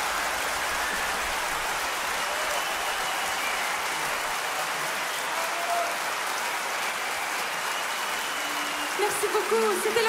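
Theatre audience applauding, a steady even clapping. A voice comes in over the applause about a second before the end.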